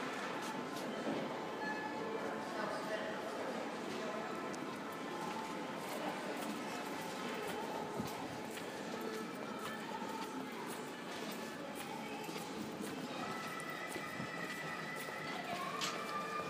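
Indoor warehouse-store ambience: distant shoppers' voices and background music, with footsteps on the hard floor as the recordist walks the aisles. A few held musical tones stand out near the end.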